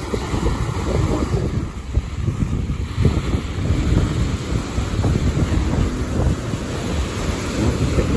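Ocean surf breaking on the shore, heard through heavy wind buffeting on the phone's microphone, which gives a gusting low rumble that rises and falls throughout.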